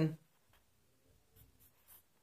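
Pen writing on paper: faint scratching, with a few short strokes in the second half.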